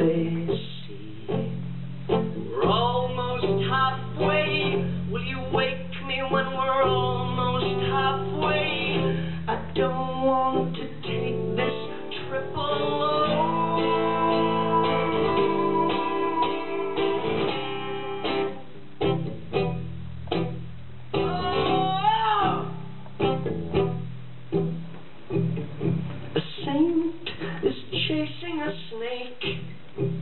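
Live solo performance: an acoustic guitar strummed steadily under a man's singing voice, with long held notes in the middle and a sliding note later on.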